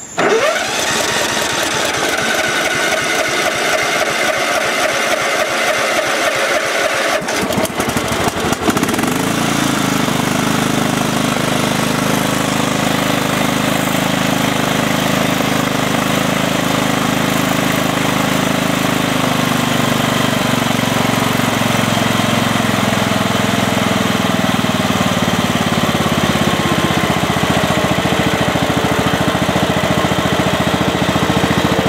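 Kohler engine of a Craftsman LT1000 riding mower, its Walbro carburetor's fuel-shutoff solenoid removed, being cranked by the electric starter for about seven seconds before it catches. It then runs steadily, its pitch dropping slightly past the middle.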